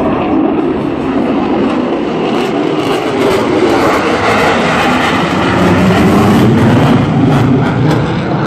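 Military jet fighter flying a low pass, its engine noise loud and steady, building slightly toward the end.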